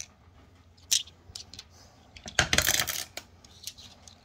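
Tumbled stones clicking against one another as they are handled: a sharp click about a second in, then a brief dense clatter of hard stone-on-stone knocks, and a few light clicks near the end.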